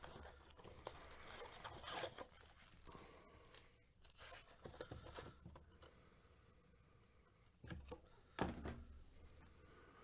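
Faint rustling and scraping of foil trading-card packs and the cardboard blaster box as gloved hands pull the packs out, with two louder knocks of packs being set down on the table about three-quarters of the way through.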